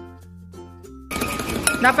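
Light background music with a falling run of notes, cutting off about a second in to the live sound of a metal spoon whisking a foamy egg mixture fast in a glass bowl.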